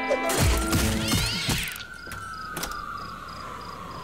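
Cartoon sound effects: a quick jumble of swooping glides and a short rising squeal in the first second and a half, then one long, slowly falling whistle-like tone.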